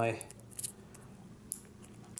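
Scissors snipping at the plastic wrapping on a AAA battery: a few short, sharp clicks, the sharpest about one and a half seconds in.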